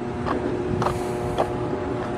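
Steady electrical hum from the hydroelectric dam's powerhouse equipment: several even, steady tones over a low haze, with footsteps on a concrete walkway about twice a second.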